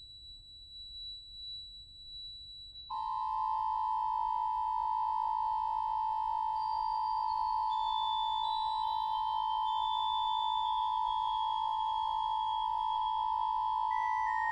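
Pipe organ holding a single soft, very high note, then about three seconds in a loud sustained chord sounds. The chord is held while some of its upper notes shift step by step downward.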